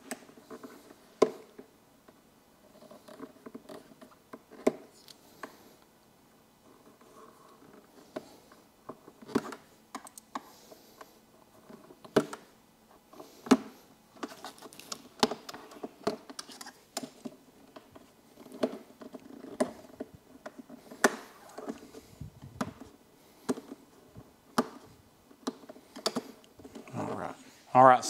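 Irregular small clicks and taps of a screwdriver and fingers working a rubber grommet into a drilled hole in a plastic motorcycle saddlebag, with wiring knocking against the plastic.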